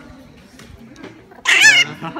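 Chihuahua giving one short, high-pitched, wavering yelp about one and a half seconds in, as a vet injects its vaccine.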